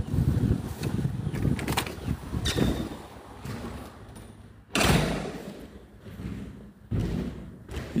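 Footsteps crunching on gravel as a phone is carried along, then two loud thumps inside a wooden yurt, the first a little past halfway and a smaller one near the end, the kind a door makes shutting.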